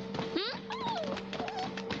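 Commercial background music holding a steady note, with a small dog's short whine about a second in.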